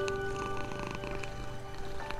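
Slow, calm music of long held notes over a domestic cat's low, steady purr.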